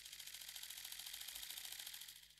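A faint, rapid, even run of clicks, like a spinning paper pinwheel, fading out near the end.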